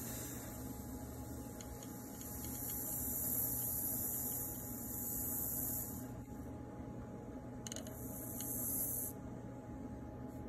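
Hot branding iron pressed into a black walnut board, sizzling as it burns into the wood. There is a steady hiss for about six seconds, then a second, shorter one near the end.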